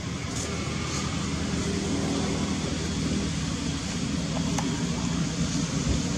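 Steady low engine-like rumble, with a faint tick about four and a half seconds in.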